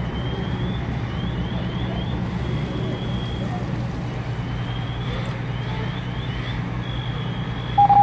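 Fire apparatus idling with a steady low engine rumble. Over it come faint high electronic tones: quick runs of rising chirps and a few held notes.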